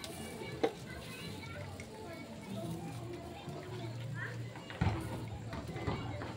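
Indistinct background voices of people and children, over a steady low hum, with a sharp click under a second in and a knock near the end.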